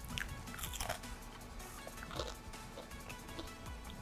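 Faint crunching and chewing of a strip of very crisp oven-baked bacon, a scatter of small crackles as it breaks up between the teeth.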